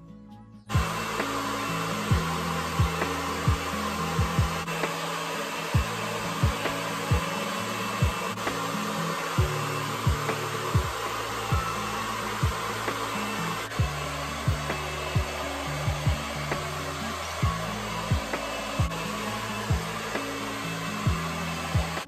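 Handheld hair dryer blowing steadily, starting suddenly about a second in. Under it runs background music with a deep bass line and a regular kick-drum beat.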